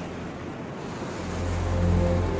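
Ocean surf: waves breaking, an even rushing wash, as the film's background music dips and then swells back in low about halfway through.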